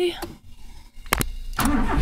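1988 Honda Civic's 1.5-litre engine being started with the key on a newly replaced ignition switch. A sharp click comes about a second in, then the engine cranks briefly, catches and settles into a steady low running sound.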